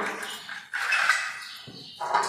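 A young girl's voice giving two breathy shouts, the second about a second in and the louder, trailing off.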